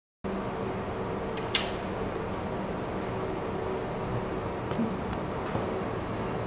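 Steady hum of room noise, like a fan or air conditioner, with one sharp click about a second and a half in and two fainter clicks near the end.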